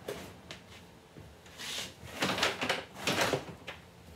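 Things being handled and moved about: a couple of light knocks, then three short scraping, rustling noises in the second half.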